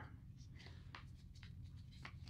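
Near silence, with a few faint light knocks and rustles from hands handling two plastic Mantis Blackbeard trainer units.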